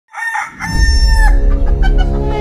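A loud animal call: two short notes, then one long, steady note that dips at its end. A deep low hum runs underneath from about half a second in.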